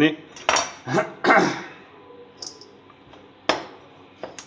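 A chef's knife scraping across a wooden cutting board and sliced bell pepper dropping into a stainless steel mixing bowl, several loud clattering scrapes in the first second and a half. Quieter handling follows, then a single sharp knock.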